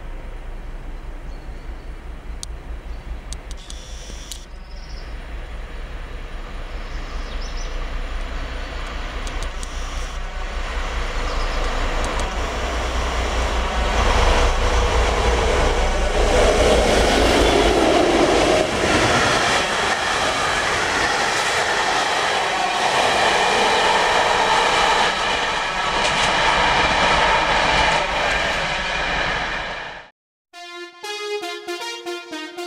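Diesel locomotive hauling a passenger train: a low, steady engine rumble at first, then the louder noise of the train passing close by, wheels running on the rails, filling the second half.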